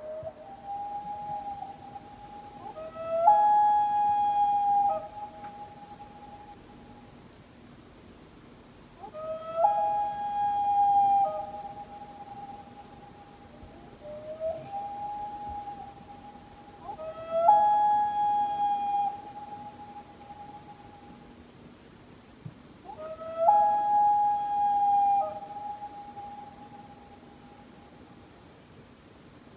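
Common loon calling: a series of long wailing calls, each stepping up in pitch and then held, four loud ones about seven seconds apart with fainter ones between. Under them runs a steady high-pitched hum.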